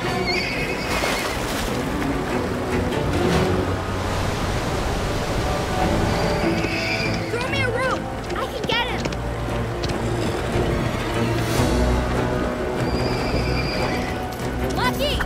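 A horse whinnying several times, in bursts about halfway through and again near the end, over a bed of orchestral music and rushing river water.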